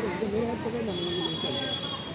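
Background voices of people talking, with a brief steady high tone partway through.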